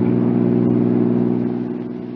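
Radio-drama sound effect of a car engine running steadily, a low even hum that eases off slightly near the end.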